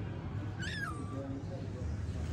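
A kitten gives one short, high-pitched meow about two-thirds of a second in, rising and then falling in pitch, over a steady low background rumble.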